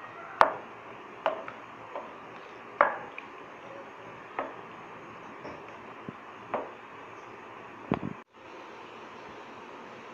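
Wooden spoon stirring a thick cheese sauce with chicken in a pan, knocking against the pan about eight times at irregular intervals over a steady background hiss. The sound drops out briefly near the end.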